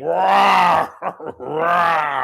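A man imitating a bear's roar with his own voice: two long, loud, held groaning calls, the second starting about a second and a half in.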